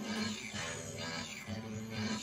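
Upbeat electronic song with a high synthetic singing voice over a steady repeating bass line, playing from a screen's speaker.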